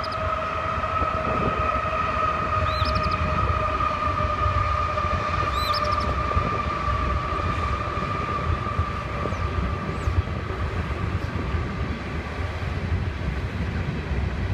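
Small songbird chirping: three short, arched chirps in the first six seconds. Under them run a steady droning tone that sinks slightly and fades near the end, and a constant low rumble.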